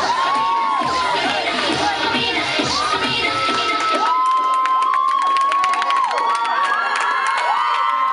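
Audience cheering and screaming with long, high whoops over dance music; about halfway through the beat drops away and the crowd's screams carry on alone.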